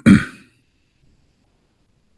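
A man clearing his throat once, a short rough rasp right at the start.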